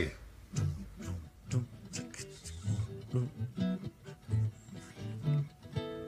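Nylon-string acoustic guitar playing the instrumental opening of a song: picked low bass notes alternating with higher notes and short chords in an uneven rhythm.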